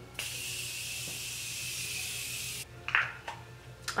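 Morphe Continuous Setting Mist spraying onto the face in one steady hiss of about two and a half seconds, starting and cutting off sharply.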